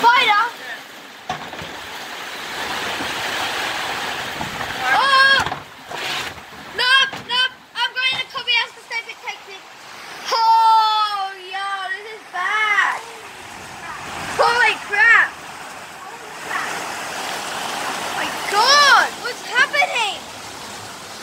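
Heavy storm rain pouring steadily, with high-pitched voices calling and talking over it at intervals.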